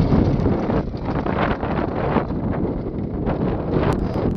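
Wind buffeting the microphone in gusts, with a Suzuki RM85 dirt bike's two-stroke engine running less plainly beneath it.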